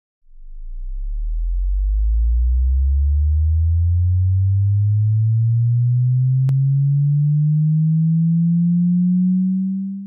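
A synthetic pure tone that starts very low and glides slowly and steadily upward in pitch, an intro sound effect. It fades in over the first couple of seconds, holds a steady level, then dies away at the very end.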